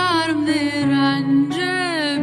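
A slow song: a solo voice holding long, wavering sung notes that glide between pitches, over steady low sustained accompaniment.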